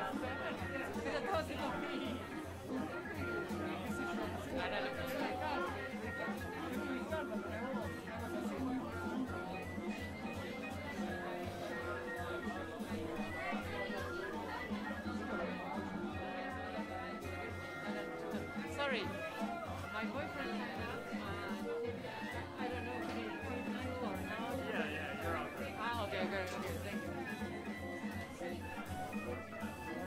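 Recorded background music with a steady bass pulse playing under crowd chatter and conversation.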